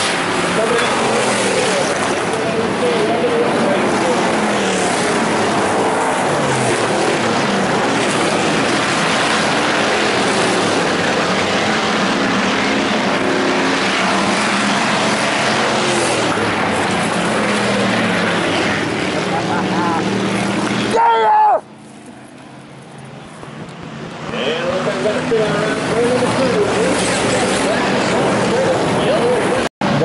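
A pack of IMCA Hobby Stock race cars running on a dirt oval, their engines close by and rising and falling in pitch as they pass, with a public-address announcer's voice underneath. About two-thirds of the way through the engine sound drops off abruptly, then builds back up as cars come around again.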